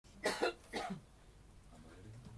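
A person coughing: two short coughs within the first second.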